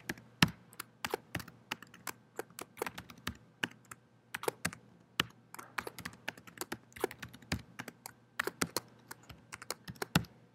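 Typing on a computer keyboard: a run of irregular key clicks, with a couple of brief pauses, as commands are entered.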